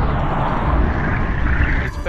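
Film sound effect of a submarine and a torpedo running underwater: a deep rumble under a rushing hiss that swells and rises in pitch, cut off suddenly just before the end.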